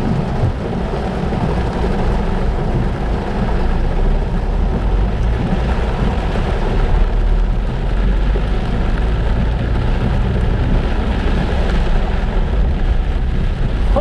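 Heavy rain beating on a car's windshield, heard from inside the cabin as a steady dense hiss over a low rumble of the moving car.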